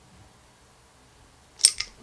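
Two sharp clicks close together near the end: a thin carbon fiber plate snapping out of its slot in the frame and springing off.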